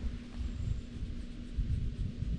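Wind rumbling on the microphone in uneven gusts, with a faint steady low hum underneath.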